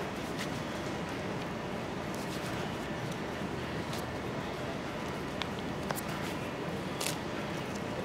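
Elastic elbow wrap being wound tightly around an arm: a few faint, light clicks and rustles over a steady background hiss.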